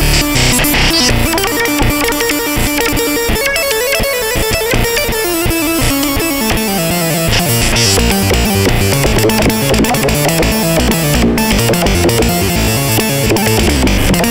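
Novation Peak polyphonic synthesizer playing a dense improvised passage of quickly changing notes with a plucked, guitar-like tone. The low bass thins out for a few seconds, then comes back with a falling line about halfway through.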